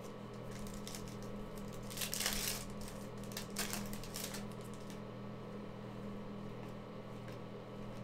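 Foil wrapper of a Panini Contenders football card pack crinkling as it is torn open: a few short rustles from about two to four and a half seconds in, then only a faint steady hum.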